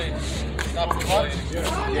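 Men's voices talking, with a few short sharp taps between the words.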